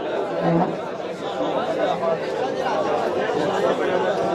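Steady hum of a yeshiva study hall: many men's voices overlapping as students study Torah aloud, a continuous babble in a large hall with no single voice standing out.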